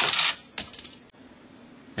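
Small plastic toy vehicle (the Roller figure) shooting out of a toy trailer and clattering across a wooden floor on its many wheels: one loud rattling burst at the start, then a few lighter clicks about half a second in.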